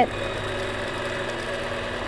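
Longarm quilting machine running steadily as it stitches a free-motion quilting design.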